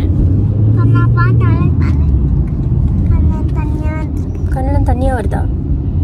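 Steady low rumble of a car heard from inside the cabin, with a high voice talking briefly now and then over it.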